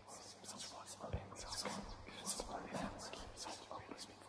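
Several indistinct whispering voices overlapping above a faint steady low hum, forming the sound design of a logo intro sting.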